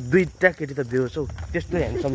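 A man talking, continuous speech with no other sound standing out.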